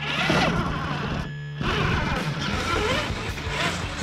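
Radio-controlled scale 4x4 truck driving through snow close by: its electric motor whines up and down in pitch and the tyres churn snow, with a short lull a little over a second in. Background music plays underneath.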